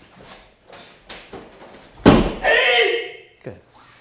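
A few light scuffs, then about halfway a heavy thud as a body is thrown down onto a padded martial-arts mat, followed at once by a loud shout lasting about a second.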